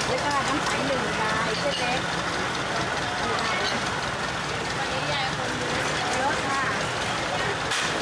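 Market ambience: several people talking in the background over an engine's steady low hum.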